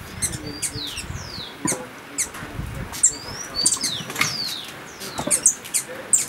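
Many small birds calling with quick, high chirps and short falling whistles, several every second, with wings fluttering.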